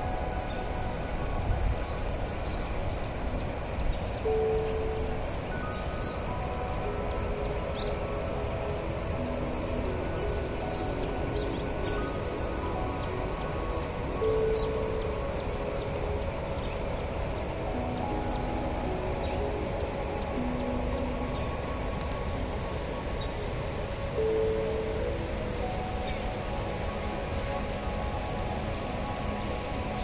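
Insects chirping in a steady, evenly pulsing high trill, over soft background music of long held notes that change every second or so.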